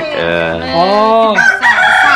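A rooster crowing, one long call that rises and then falls in pitch.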